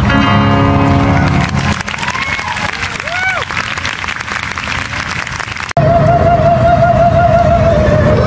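Male opera singing with piano ends about two seconds in. An outdoor audience then applauds and cheers. The sound cuts abruptly, and a soprano holds a high note with wide vibrato.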